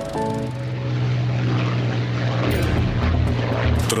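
A few notes of music end, then the propeller engines of a Junkers Ju 52 transport drone steadily in flight.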